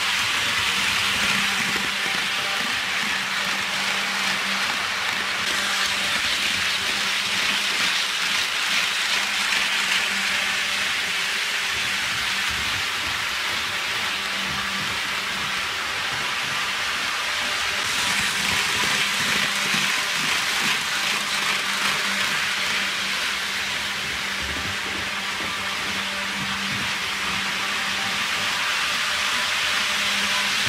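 HO scale model train running on its track: a steady rattling hiss of many wheels rolling over the rails, with a steady low motor hum underneath, growing somewhat louder twice as the train passes close.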